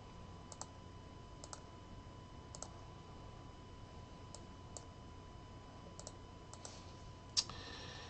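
Faint, scattered clicks of a computer keyboard and mouse, about ten over several seconds, as numbers are entered into a spreadsheet and the list is sorted. A faint steady high tone runs underneath.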